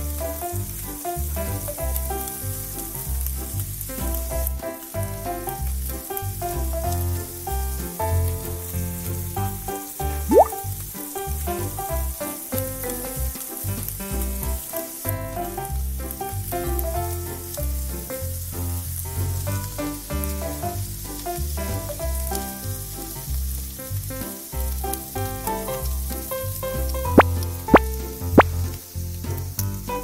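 Thin crepe batter and egg sizzling in a miniature frying pan, a steady high hiss, over background music with a pulsing beat. A few sharp clicks near the end.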